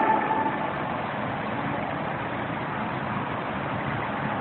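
Steady, even background noise with no rhythm or pitch, after a voice trails off about half a second in.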